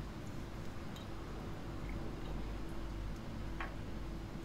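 Quiet kitchen room noise: a low steady hum with a faint steady tone, and a few soft ticks, the clearest about a second in.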